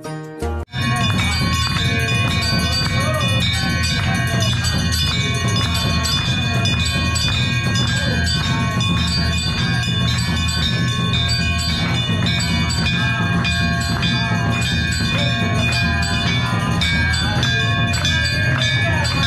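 Live Hindu aarti: a crowd singing and clapping in time while brass temple bells ring without pause. The whole is loud and echoes in a rock-cut cave shrine.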